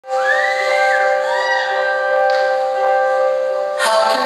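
Live band music: a held chord of steady tones with high whistle-like tones gliding up and down over it, then the full band comes in just before the end.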